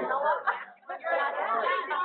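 Only speech: people talking, with overlapping chatter.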